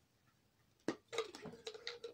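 Near silence, then a sharp click about a second in, followed by a quick run of light clicks and rattles. These are tablets being handled into the small plastic compartment of a 7-day pill organiser.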